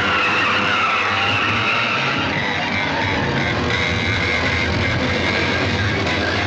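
Film chase soundtrack: car and motorcycle engines running hard under loud, steady background music.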